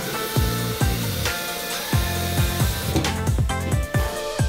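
Background music with a steady kick-drum beat over the hiss of a tap running water into a stainless electric kettle at a steel sink, with the hiss ending about three seconds in.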